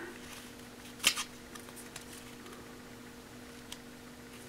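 Faint scraping and rubbing of a piece of cardboard used as a scraper, spreading Goop adhesive over a vinyl seat, with one louder scrape about a second in and a few light ticks later. A faint steady hum runs underneath.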